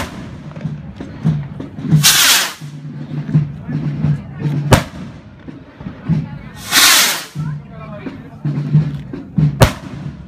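Hand-launched firework stick rockets: each goes off with a rushing whoosh as it takes off and bursts with a sharp bang a couple of seconds later overhead. There is a bang right at the start, then twice a whoosh followed by a bang.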